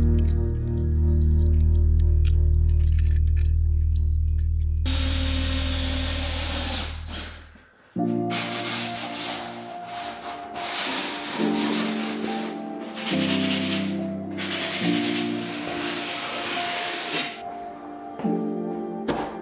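Background music with a deep, held bass fades out about eight seconds in. After that, a sanding sponge is rubbed back and forth along a wooden cleat in repeated strokes, over continuing music.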